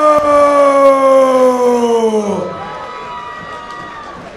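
A man's voice holding one long drawn-out call, its pitch slowly falling, the way a ring announcer stretches the last syllable of a fighter's name. It breaks off about two and a half seconds in, leaving quieter crowd noise.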